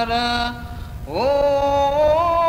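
Male voice singing a Gujarati ginan, a devotional hymn: a held note ends about half a second in, and after a short breath a new note slides up into place and is held with a slight waver.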